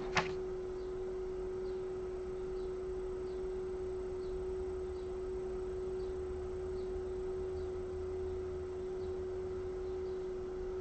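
A steady, single-pitched drone tone, like a sustained pure note, holding without change. A short sharp click comes just after the start.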